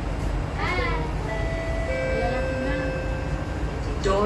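Two-note electronic chime in a metro train's cabin, each note held for about a second and a half, with the second coming in about half a second after the first. It is the warning that the doors are about to close. Under it runs the steady hum of the train standing at the platform, with a brief voice-like sound just before the chime.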